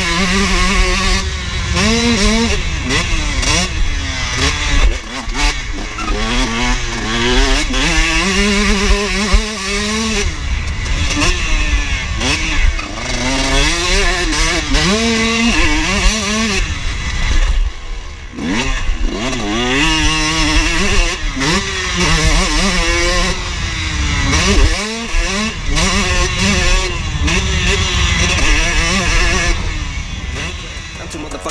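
KTM motocross bike's engine running hard around a dirt track, the throttle opened and shut over and over so that its pitch keeps rising and falling.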